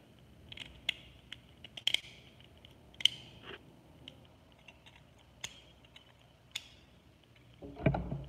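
Plastic and metal parts of a Beyblade Burst top being fitted and twisted together by hand: scattered sharp clicks and light scrapes, the loudest about three seconds in.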